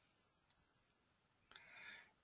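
Near silence: room tone, with a faint, short sound near the end.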